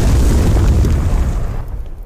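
Loud, deep rumble of a large explosion, dying away over the last half second.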